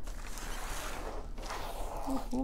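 Cardboard packaging rubbing and scraping as a boxed kit is handled and an inner package is slid out of its box, with a couple of short knocks.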